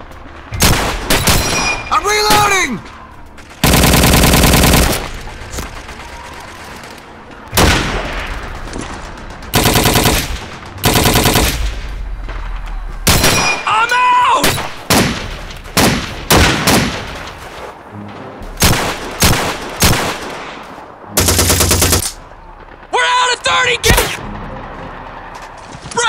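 Gunfire battle sound effects: scattered single rifle shots and several long machine-gun bursts, the longest lasting about a second and a half.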